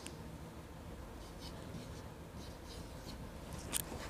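A marker pen drawn across a whiteboard: a series of faint, short strokes as circles are drawn around words.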